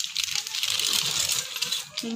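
Aluminium foil crinkling as it is peeled back off a baking dish, a dense crackle of many tiny sharp ticks.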